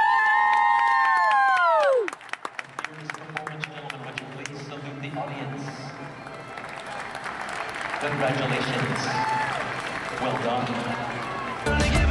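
Audience applauding and cheering: a loud, drawn-out 'woo' close by for about the first two seconds, then a flurry of individual claps that thins into crowd murmur. Music starts abruptly just before the end.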